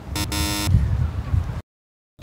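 Quiz-show style 'wrong answer' buzzer sound effect: one harsh buzz about half a second long, marking the guess as incorrect. The sound then cuts out to silence shortly before the end.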